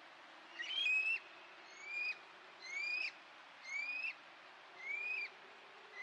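A night animal's call: a whistled note that rises in pitch and then drops off quickly, repeated six times about once a second. It sits over a faint steady hiss of background noise.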